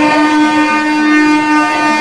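A single steady held tone with several overtones, horn-like, holding one pitch without a break.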